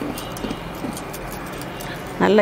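Wire whisk beating thick batter in a ceramic bowl, a quick, even run of soft clicking strokes, about five a second.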